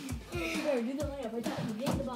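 A girl's voice, unworded, over background music with a beat.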